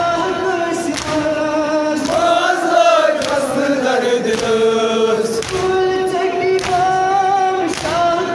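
A Kashmiri noha, a Shia lament, sung by a male reciter through a microphone, with a group of voices joining the long held phrases. Sharp hand strikes of matam (chest-beating) keep time about once a second.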